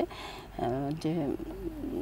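A woman's voice, soft and drawn-out, making hesitant sounds without clear words; it starts about half a second in.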